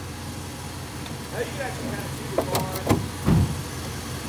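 A vehicle engine idling steadily in the background as a low hum, with faint voices and a short low thump about three seconds in.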